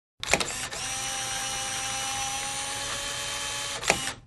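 Tape-machine transport winding the tape at speed: a clunk, then a steady mechanical whir for about three and a half seconds, ending with another clunk and a quick run-down.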